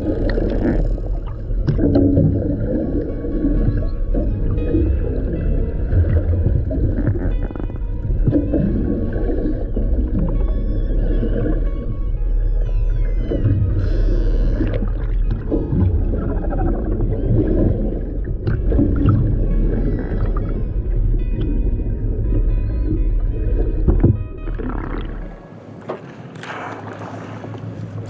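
Killer whales heard underwater: a dense run of raspy, buzzing calls like blown raspberries, made by controlling their exhale, mixed with clicks over a steady low water rumble. There are a few rising whistles about halfway through. The underwater rumble cuts off near the end.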